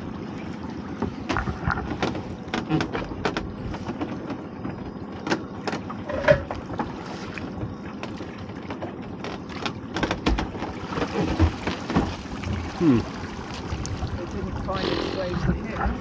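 A crab pot being hauled up by hand over the side of a small boat: scattered knocks and clicks of the rope and the wooden-framed pot against the hull. Water runs off the pot as it is lifted clear near the end.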